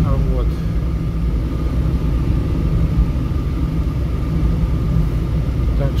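Road noise inside a moving car's cabin: a steady low rumble of tyres and engine, with a faint steady high hum over it.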